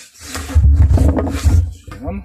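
Loud rubbing and scraping right against the phone's microphone for about a second and a half, with a heavy low rumble: handling noise as the phone is moved about.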